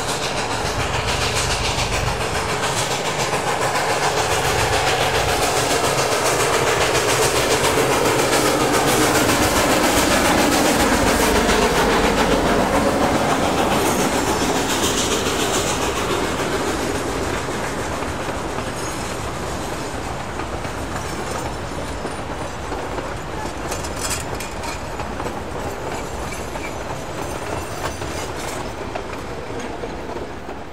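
Durango & Silverton K-28 class steam locomotive No. 473, a narrow-gauge 2-8-2, working past with its train, loudest about ten seconds in. Then the cars' wheels click over the rail joints as the train moves away and fades.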